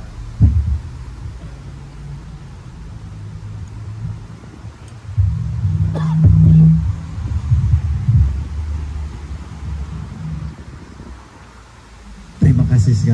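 Low, uneven rumble on an open microphone, with a sharp thump about half a second in and a louder stretch in the middle with a brief knock.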